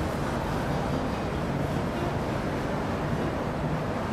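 Steady rushing background noise with a low hum underneath, even throughout and without distinct knocks or cuts.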